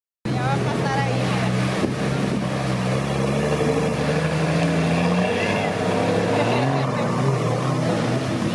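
Jeep Wrangler engine running off-road, its pitch rising and falling as it is revved, with people's voices over it.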